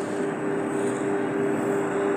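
Steady mechanical hum with two constant low tones over an even hiss, unbroken throughout.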